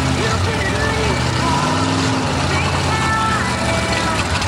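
Mud-bog truck engine running at a steady low idle, with voices talking over it.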